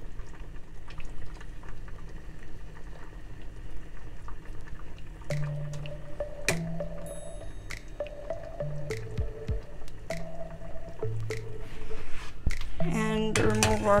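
Pasta water boiling in a pot. About five seconds in, background music joins it: held bass and melody notes that change every second or so. A voice begins near the end.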